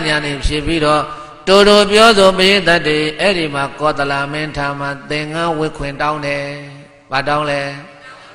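A Buddhist monk's voice intoning a chanted recitation through a microphone, in long held phrases, with short pauses about one and a half seconds in and about seven seconds in.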